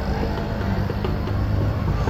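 Road traffic with a motor vehicle's engine running steadily, a low hum under the street noise.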